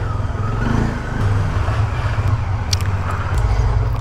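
Honda motorcycle engine running at low revs as the bike creeps slowly into a parking spot.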